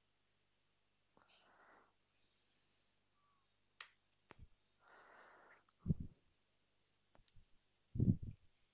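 Mostly quiet room with a few faint, sharp computer-mouse clicks and soft breathy noises. There are two dull, low thumps, one about six seconds in and one at the end.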